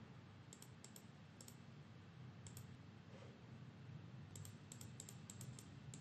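Faint computer mouse clicks over near-silent room tone: a few scattered clicks, then a quick run of clicks near the end, as grid grouping columns are removed one by one.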